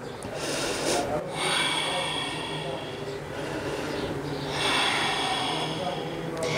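A woman breathing heavily: a few long, rushing breaths in and out, swelling and fading, as her breath settles after a vigorous flow.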